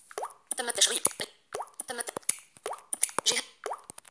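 Android screen reader's fast synthetic voice reading out the app-permission switches as each is turned on ("enabled"), with short plop and click feedback sounds between the quick phrases.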